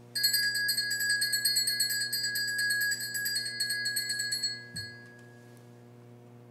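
Altar bells shaken in a rapid, continuous bright peal for about four and a half seconds, rung at the elevation of the consecrated host, then stopping with a soft knock.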